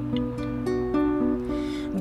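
Acoustic guitar playing a short picked instrumental passage, its notes changing every fraction of a second.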